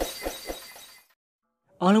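Breaking-glass sound effect: a sudden shatter with a few quick rattling hits that fade out within about a second. A voice begins near the end.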